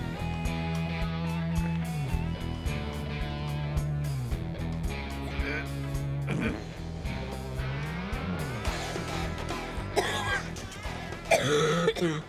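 Background music with guitar, sustained bass notes and a steady beat. Near the end a person coughs.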